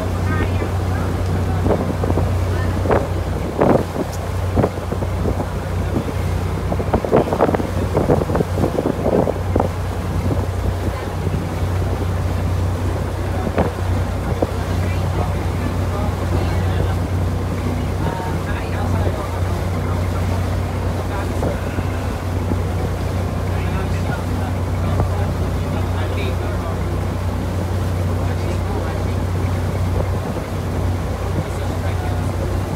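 Small wooden motor boat's engine running with a steady low drone as it travels, with water and wind noise on the microphone.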